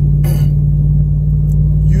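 Vehicle engine running steadily, heard from inside the cab as a low drone. A brief breath or mouth noise comes about a quarter second in, and a throat-clear near the end.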